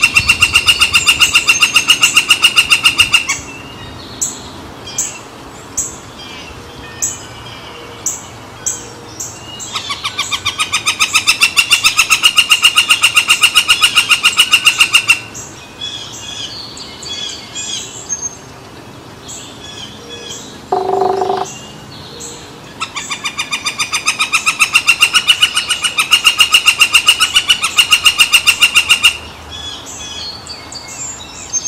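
Woodpecker calling: three long, rapid series of loud repeated notes, with single sharp call notes between the first two series. A brief lower-pitched sound comes about 21 s in.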